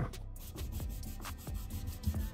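Wet cloth rag rubbing over the inside curve of a kerf-bent walnut board, wiping off wet wood-glue squeeze-out. Quiet, with soft background music.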